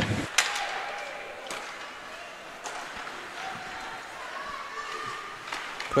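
Ice hockey arena ambience: a murmur of distant voices echoing in the rink, with a few sharp knocks from sticks and puck.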